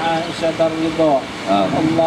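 A man's voice chanting a prayer in a drawn-out, melodic recitation, with held notes that bend up and down, over a steady background hum.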